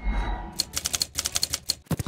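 Typewriter keys clacking in a quick run of sharp strikes, opening with a low thud: a sound effect for an animated typewriter logo.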